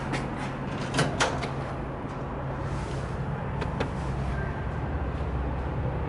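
ThyssenKrupp hydraulic elevator's stainless-steel doors sliding shut, with a knock about a second in and a few lighter clicks later, over a steady low hum.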